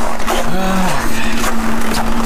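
Steady low hum of an idling semi-truck diesel under loud rustling and handling noise from the moving camera. A short voiced 'hm' comes about half a second in.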